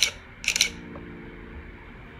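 A man's short breathy laugh, two quick bursts, followed by a faint steady low hum of several held tones.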